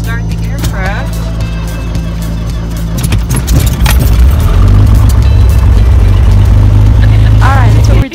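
Cessna 182's six-cylinder piston engine being cranked with its new starter and catching about three seconds in, then running loud and steady in the cockpit.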